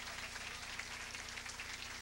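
Audience applauding, with a steady low hum underneath.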